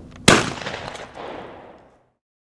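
A single shotgun shot about a quarter second in, its echo dying away over about a second and a half.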